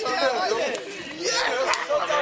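Several men's voices talking over one another in casual chatter.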